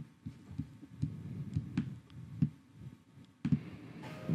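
Irregular soft clicks and low thumps from a computer mouse being clicked and moved on a desk, about a dozen over four seconds, with a sharper knock near the end.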